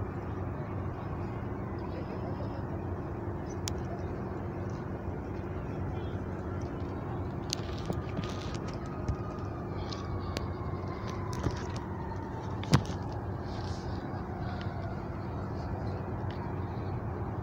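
Steady outdoor city hum of distant traffic, with a faint tone that slowly falls in pitch through the second half. A few sharp knocks cut through it, the loudest near the end.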